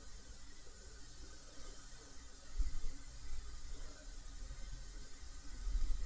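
Faint room tone: a low hum and soft hiss, with one soft low bump about two and a half seconds in.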